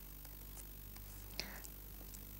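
Faint light ticks and scratches of a stylus writing on a tablet PC screen, over a low steady hum. A brief breathy hiss comes about one and a half seconds in.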